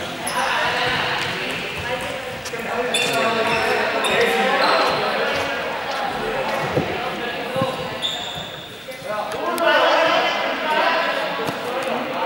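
Several young people's voices calling and chattering across a large, echoing sports hall, with a ball bouncing and being struck on the hard court now and then.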